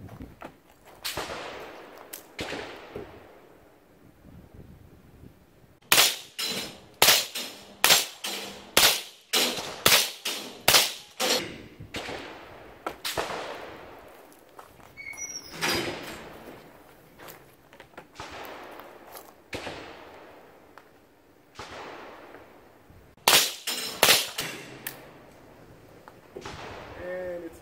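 Gunshots at a shooting range. There are two single shots early on, then a fast string of about a dozen shots from about six seconds in, roughly two a second, then scattered single shots and a quick group of three or four near the end.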